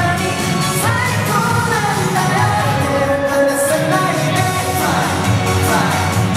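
Live pop performance by a boy band: male voices singing into handheld microphones over amplified music with a steady low beat.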